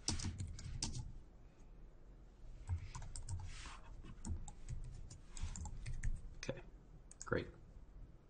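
Typing on a computer keyboard: irregular bursts of keystrokes as a line of code is entered. A single spoken word comes near the end.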